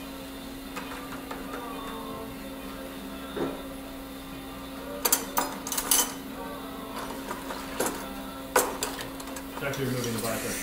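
Operating-room sound during surgery: a steady electrical hum under low murmured voices, with a handful of sharp clicks and clinks of surgical instruments from about halfway through, the loudest near the end.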